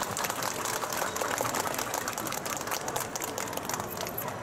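Audience applauding: a dense, steady patter of many hands clapping.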